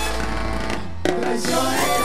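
Live cumbia band playing: held notes thin out, then a sharp drum hit about a second in brings the band back in with a singing line.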